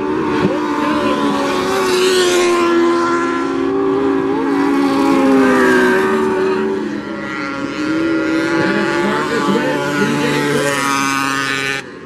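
Several mini sprint cars racing on a dirt oval, their engines running hard together at high revs. The pitches overlap and rise and fall as the cars pass and go through the turns.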